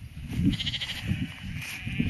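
A sheep bleats once, a high, quavering call about half a second in. Irregular low thumps and rumble run underneath.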